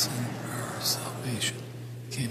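Low, half-voiced speech, a prayer being recited, with sharp hissing consonants, over a steady low hum.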